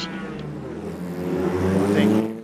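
Prototype race car engine running down the pit lane, its pitch and loudness rising through the second half as it accelerates.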